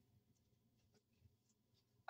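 Near silence, with only faint soft scraping and a few light ticks from a wooden spoon stirring a thick creamy mixture in a glass bowl.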